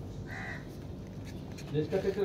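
A single short, harsh bird call like a crow's caw, about a third of a second in. A voice starts near the end.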